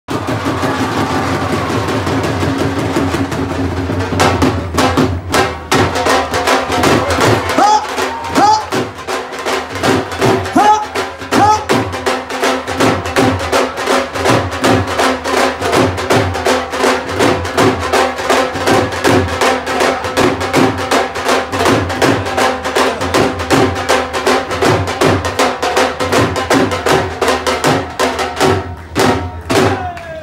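Several Punjabi dhols, double-headed barrel drums struck with a thick and a thin stick, played together in a fast, steady bhangra rhythm. The drumming comes in fully about four seconds in and stops just before the end.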